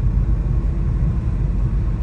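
Steady low rumble of a car driving along a paved road, heard from inside the cabin: engine and tyre noise.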